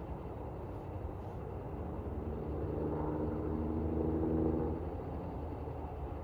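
Steady low outdoor rumble with a distant engine drone that swells from about two seconds in and fades away by about five seconds.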